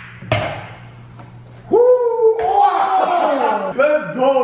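A sharp click of pool balls colliding about a third of a second in, then from just before the two-second mark a loud, drawn-out exclamation from a man, his voice sliding in pitch.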